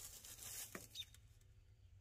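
Near silence: faint rustling of small objects being handled, with a couple of light ticks about a second in.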